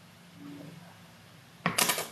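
A brief cluster of sharp clicking knocks, hard objects clattering, about one and a half seconds in.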